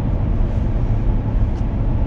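Steady engine and road drone of a pickup truck on the move, heard inside the cab.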